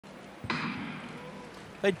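Starting gun fired once about half a second in, its crack ringing on in a large indoor arena. This is the start that holds: the field gets away cleanly this time.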